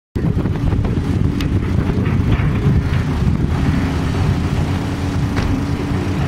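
A steady low engine rumble, with wind buffeting the microphone and a couple of faint knocks.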